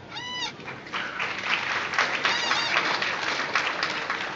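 Audience applauding, with two short high-pitched whoops of cheering: one right at the start and one about two and a half seconds in.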